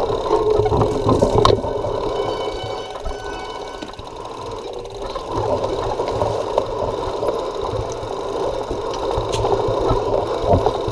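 Mountain bike riding fast over a dirt forest trail, heard from on the bike: a continuous rattle and tyre rumble, muffled, over a low rumble. It is loudest in the first second and a half, eases off around four seconds in, then builds again.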